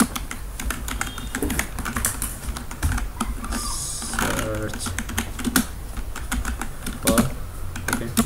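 Typing on a computer keyboard: a run of quick, irregularly spaced keystroke clicks.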